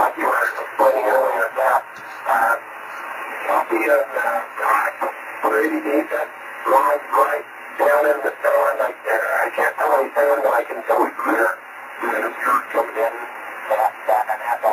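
A distant station's voice coming in over an amateur radio receiver's speaker on a 10 GHz link: narrow, thin-sounding speech with a little hiss, spoken in stretches with short pauses. The words are hard to make out, typical of a microwave signal scattered off rain.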